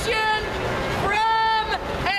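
A woman shouting in a high, strained voice, holding one long shouted sound from about a second in.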